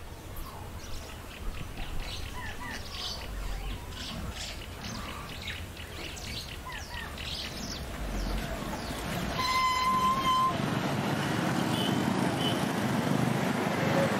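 Birds chirping over a faint city background. A vehicle horn then sounds once for about a second, and the steady noise of street traffic grows louder after it.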